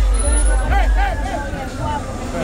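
Crowd of people talking and calling out over music, with a steady low rumble underneath.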